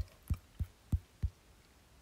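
Five quick, dull finger taps on a phone's touchscreen, evenly spaced about three a second.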